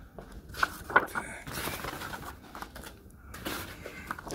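Chair packaging being handled: cardboard and plastic wrap rustling, with a few sharp knocks, the loudest about a second in.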